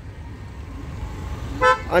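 Hyundai Verna's horn chirping briefly to confirm locking from the key fob, over a low steady outdoor rumble.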